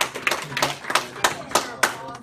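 A small group applauding with quick, uneven hand claps, with a few voices underneath.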